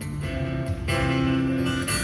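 Solo acoustic guitar played fingerstyle: picked notes ringing over a low bass line, with a few sharper plucked attacks.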